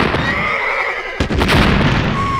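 A loud, dense din of cartoon sound effects, with a wavering high cry in the first second and a sudden hit a little past the middle.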